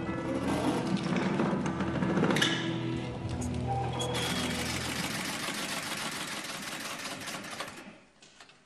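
Film score music, then about four seconds in a shoemaker's sewing machine running fast and steady, which stops abruptly just before the end.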